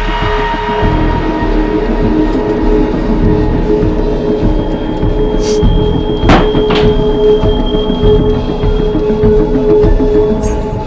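Loud soundtrack music: a long held droning tone over dense low pulsing, with a couple of short sharp accents about the middle.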